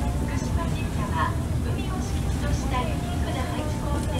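A passenger ferry's engine rumbling steadily, with indistinct chatter of other passengers over it.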